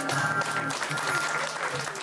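The last acoustic guitar chord rings and stops about two-thirds of a second in, and audience applause fills the rest.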